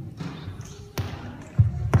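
A sharp click about a second in, then two low thumps close together near the end.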